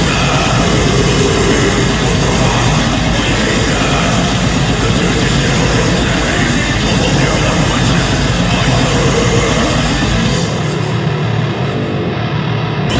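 Loud heavy metal music: a dense, distorted full-band wall of sound. Near the end the deep bass and the highest frequencies drop away for a moment.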